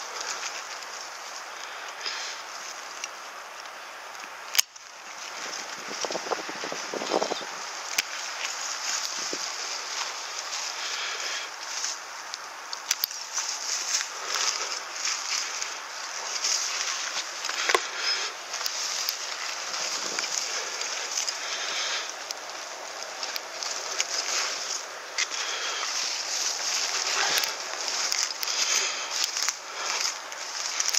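Pine branches and needles rustling and crackling as gloved hands work through a pine being trimmed, with scattered sharp snaps. One loud click comes about four and a half seconds in.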